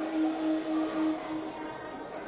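A horn sounding one held note, wavering in loudness and fading out after about a second and a half, over hall noise.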